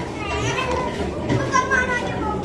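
Background chatter of several people's voices, children's among them, with no one speaking to the camera.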